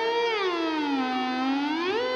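Electric guitar solo in the conch-imitating sankha dhwani style: one held, sustained note slides down in pitch, stays low, then rises again near the end.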